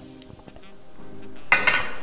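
Faint background music, then about one and a half seconds in a sharp click of billiard balls knocking together as they are moved on the table.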